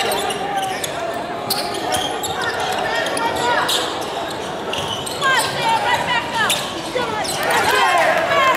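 Basketball game on a hardwood court: the ball bouncing on the floor, sneakers squeaking, and players and spectators calling out in a large echoing hall.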